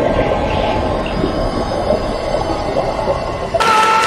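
Muffled underwater churning and bubbling as a heavy body thrashes in a pool. Shortly before the end it cuts abruptly to the brighter above-water sound of splashing, with a held tone over it.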